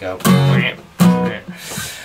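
Acoustic guitar: two strummed chords, the first just after the start and the second about a second in, each ringing and fading.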